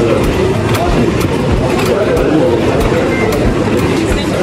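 Airport baggage carousel running, with a low rumble and a regular clack about twice a second, under the chatter of people waiting at the belt.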